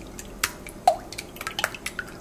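A whisk stirring a thin liquid batter of yeast water, egg and oil in a glass bowl: small wet splashes and scattered light clicks of the whisk against the glass.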